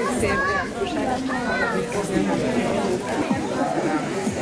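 Group of people chatting, several voices overlapping in conversation.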